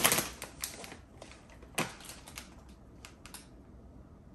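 Rapid clicking and rattling, dense in the first second, then thinning out to a few separate clicks, the sharpest one near the middle.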